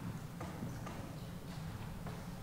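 Scattered footsteps and light knocks of people moving forward for communion, over a steady low hum of room tone.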